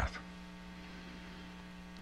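Low, steady electrical mains hum with a light hiss underneath, the background noise of the recording.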